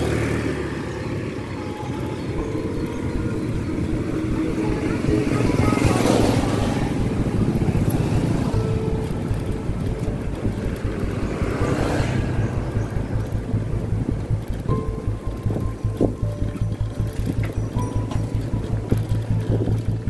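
Music with a steady beat and held tones, with two swelling sweeps partway through.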